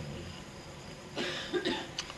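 A single short cough a little over a second in, over faint steady hiss.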